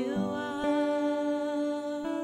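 Worship song with women's voices: the lead singer holds a long sustained note while a backing singer harmonises.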